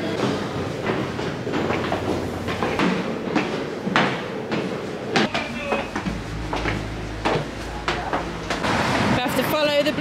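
Footsteps going down an indoor staircase, an irregular run of knocks about twice a second, against a background of echoing voices.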